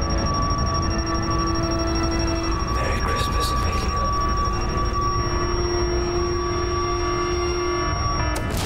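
Science-fiction spaceship interior ambience: a steady low rumble with long held tones and a thin high whine on top, and a brief hiss about three seconds in.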